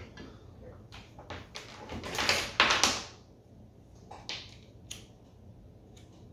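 Handling noise from a handheld digital multimeter and its test leads being gathered up and set down on a table. There are scattered light clicks and knocks, a louder rustling scrape about two seconds in, and a few sharp clicks near the end, over a faint steady hum.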